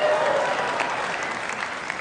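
Large theatre audience applauding, with a few voices cheering over the clapping.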